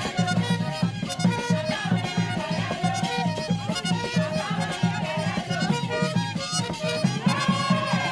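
Traditional dance music: fast, steady drumming with a wavering melody line above it.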